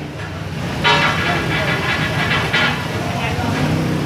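Road traffic running steadily, with a vehicle horn sounding for about two seconds starting about a second in.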